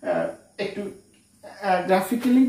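A man's voice in two short bursts, then a pause of about half a second before he speaks again near the end.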